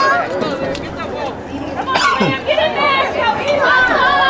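Several people talking and calling out over one another, with a single sharp click about halfway through.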